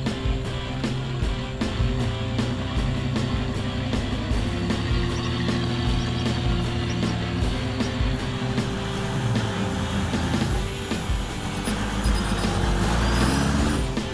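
Background music with a steady beat and held notes, building with a rising sweep near the end.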